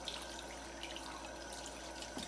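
Kitchen faucet running steadily, water splashing off a plastic bowl being rinsed and scrubbed into a steel sink, with faint drips and splashes.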